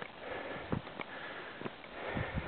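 A hiker breathing close to the microphone, with about three footsteps on snow and rock.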